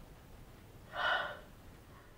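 A woman's short, sharp gasp, once, about a second in, over faint room hiss.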